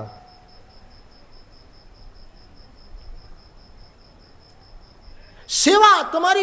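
A pause with only a faint, steady, high-pitched pulsing tone over a low background. About five and a half seconds in, a man's voice comes back loudly over the microphone.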